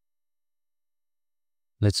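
Dead silence, with no room tone or typing, until a man's voice starts speaking near the end.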